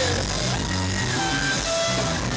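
Live band music without singing: steady bass notes under a few held pitched notes.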